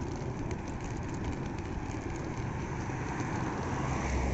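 Steady hum of road traffic, with cars driving past on the street.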